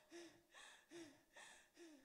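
A woman gasping and sobbing faintly into a handheld microphone: quick breaths about every half second, three of them catching in short whimpers.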